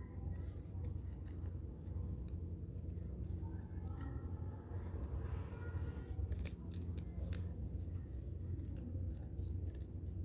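Thin craft paper being folded and creased by hand: small, scattered crinkles and clicks of paper handling over a steady low hum.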